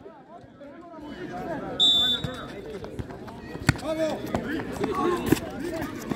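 A football being kicked on a hard outdoor court, with sharp knocks about two-thirds of the way in and near the end, over spectators' voices. A short high whistle sounds about two seconds in.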